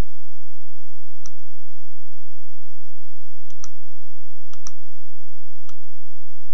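Computer mouse button clicking, a few separate sharp clicks with a quick pair of clicks just before the end, over a faint steady hiss.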